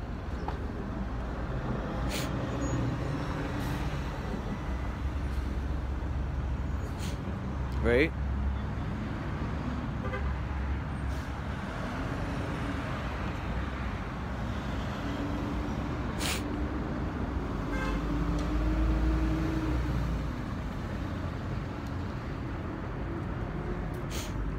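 City street traffic running steadily with a low rumble, with a long level tone from a passing vehicle in the second half.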